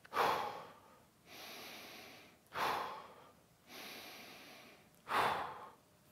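A man's deliberate, moderately deep breaths in a slow, even rhythm: focus breaths, deeper than normal but not very deep. Quieter, steadier breaths alternate with louder ones that start sharply and fade, about one full breath every two and a half seconds.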